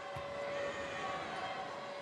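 Steady murmur of a basketball arena crowd during a free throw, with a faint held tone underneath. One dull thump comes just after the start, like a basketball bounced once on the hardwood.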